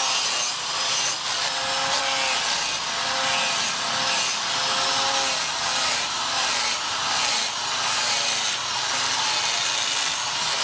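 Electric angle grinder with an abrasive disc grinding the steel edge of a blade cut from a plough disc. It runs steadily, its whine dipping and recovering in repeated passes about once a second.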